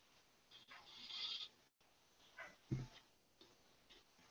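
Near silence on the call line, with a soft hiss about a second in and a brief low thump near three seconds in.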